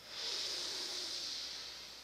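A slow, deep inhale through the left nostril, the right one closed with the thumb, in alternate-nostril breathing (nadi shodhana pranayama). It is an airy hiss that swells in the first half second and fades toward the end.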